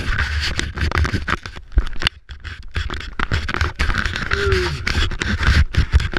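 Rough, irregular scraping and rustling with uneven knocks, made by clothing or a helmet rubbing against a head-mounted camera and its microphone.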